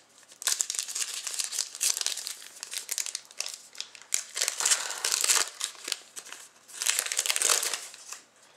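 Rustling and crinkling as a stack of Zenith hockey cards is handled and slid apart over foil pack wrappers, in three spells with short pauses between.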